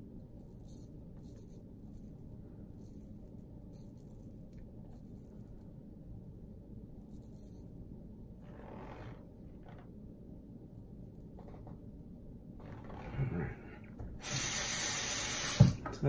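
A bathroom tap runs for about a second and a half near the end and stops with a knock, over a steady low hum from the ceiling exhaust fan. Before it come a few faint scrapes of the shavette blade on a lathered cheek.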